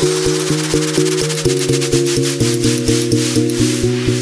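Electronic dance music: a synth line pulsing on a steady beat, with repeated pitched notes over a thin, fizzy top.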